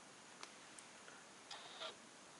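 Near silence: faint room tone broken by a few small clicks, one sharp click about half a second in and two short ones near the end.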